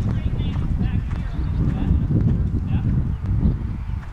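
Horse's hoofbeats at a canter on arena sand, heard under a steady low rumble.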